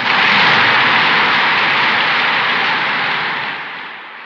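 Audience applause, heard through an old 1939 concert recording with a dull, narrow sound, fading away near the end.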